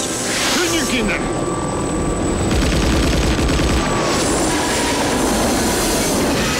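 Film action soundtrack: a helicopter's engine and rotors running loud and steady, with sparks and debris flying, and a short shouted line about a second in.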